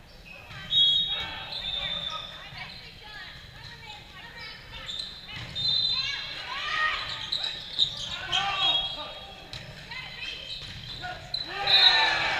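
Volleyball rally in a large, echoing gym: several players shouting and calling, sharp hits of the ball (one loud hit about a second in and another near the end), and sneakers squeaking on the court. The voices grow louder near the end.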